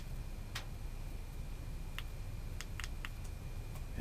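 About six small, sharp plastic clicks spread over a few seconds: the button of a rechargeable hand warmer/power bank being pressed to switch on its built-in flashlight. There is a low steady rumble underneath.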